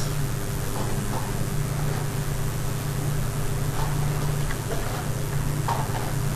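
Steady low hum with a constant hiss behind it, with a few faint short ticks scattered through.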